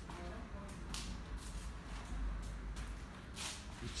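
A few soft footsteps and rustles on a hard floor over a low steady rumble.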